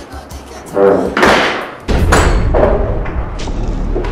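A door thudding shut and a woman crying out in distress. Dramatic film music with a low drone comes in suddenly about two seconds in.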